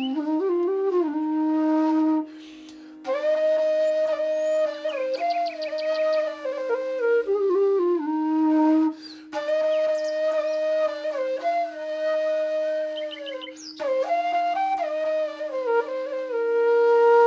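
Background music: a flute plays a slow melody over a steady held drone note, with short pauses between phrases.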